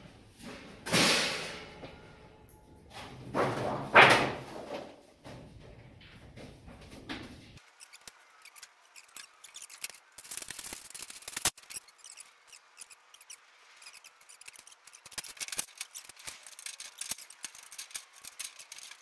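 Hands handling tools and materials at a workbench: two loud rushing noises about a second and four seconds in, then a long run of small clicks and taps.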